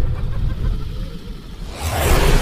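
Trailer sound design: a deep rumble with a fast ticking pulse fades away, then a rising whoosh swells into a loud rushing surge near the end.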